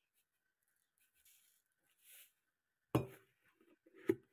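Salt poured from a canister into a plastic cup, heard only as faint brief trickles, then a single sharp knock about three seconds in as the canister is set down on the stone countertop.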